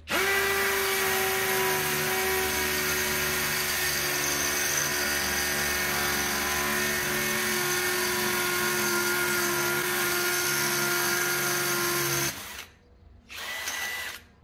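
Skil PWRCore cordless hammer drill boring a 13 mm masonry bit into a hollow concrete block. It runs at a steady pitch for about twelve seconds, stops suddenly, then gives one short burst near the end.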